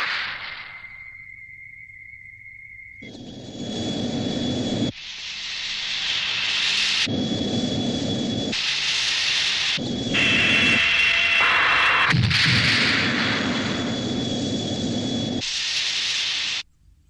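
Monster-battle sound effects: a thin, steady high tone for a few seconds, then a run of loud, noisy rumbles one to two seconds each, cut sharply one into the next, some with a steady high whine over them.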